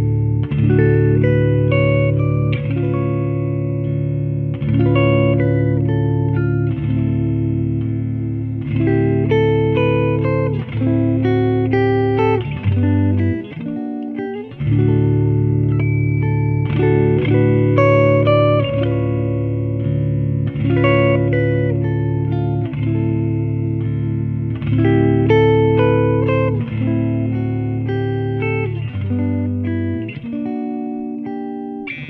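Supro Hampton electric guitar with Gold Foil pickups, played with a pick through an amplifier. Chords and single notes ring out, with a fresh strum about every two seconds and a short break about halfway through.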